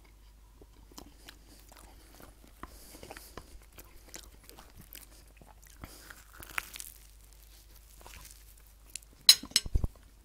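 A man chewing and biting into a toasted ham and cheese sandwich close to the microphone, a run of faint small crunchy clicks. A few loud sharp knocks come just before the end.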